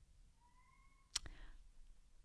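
Near-silent pause in a woman's speech as she chokes up, broken by a faint, brief thin tone and then one sharp click about a second in.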